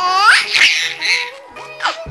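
A baby laughing in a few loud, high-pitched bursts: a rising squeal at the start and a falling one near the end. Background music with held notes plays underneath.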